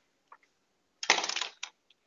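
A short metallic jingle, a quick rattle of many fine clicks like coins, lasting about half a second, a second in, with a few faint single clicks around it.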